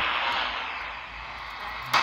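Shortwave receiver's speaker hissing with static, opening with a sharp click as the active loop antenna's cable plug goes into the radio's side antenna socket. A second click comes near the end, and the hiss grows louder.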